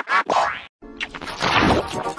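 Production-logo soundtrack music: quirky, pitched cartoon music. It breaks off briefly a little after half a second and starts again with a new logo's sound before one second.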